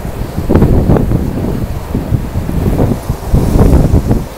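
Wind buffeting the microphone: loud, uneven low gusts that come and go through the whole stretch.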